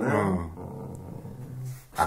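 A man's voice says a short word, then holds a long, low, drawn-out murmur, like a thoughtful 'aaah', in conversation.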